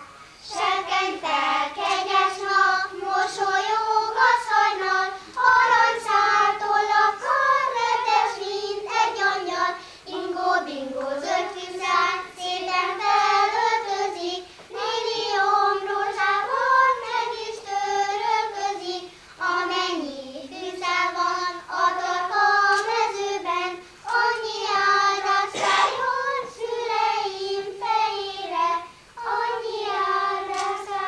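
A group of children singing a song together in unison, one melody line in phrases of a few seconds with short pauses for breath between them.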